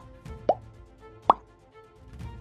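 Two short cartoon 'pop' sound effects, each a quick upward glide in pitch, about half a second and a second and a quarter in, as on-screen buttons pop into view, over soft background music.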